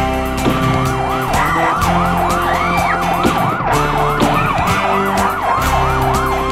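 Emergency-vehicle siren sound effect yelping, its pitch sweeping up and down about three times a second, mixed over a rock band's sustained chords and drums.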